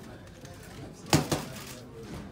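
Two punches from boxing gloves landing on a trainer's pads in quick succession, a fraction of a second apart: sharp smacks, a fast one-two combination.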